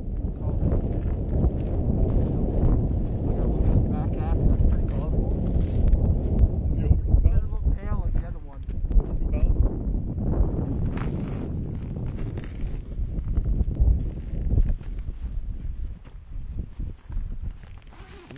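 Wind buffeting the microphone: a heavy, rumbling noise that eases near the end, with faint indistinct voices under it.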